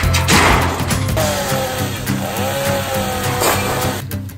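Background music over demolition work. About half a second in there is a crash, then a chainsaw runs, its pitch dipping briefly partway through as if loaded in a cut.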